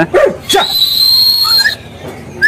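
Caged white-rumped shama (murai batu) singing: one long, clear whistled note held for over a second, then a few short rising chirps.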